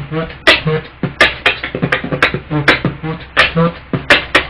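Beatboxing: a mouth-made drum beat of low kick-drum thumps and sharp snare-like hits in a steady rhythm, with short pitched vocal sounds between them.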